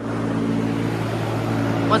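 Portable construction ventilation fans running: a steady low electric hum under an even rush of moving air.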